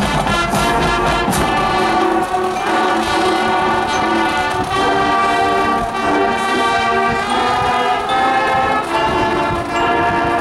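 A marching band's brass section playing a slow piece in long held chords that change about once a second.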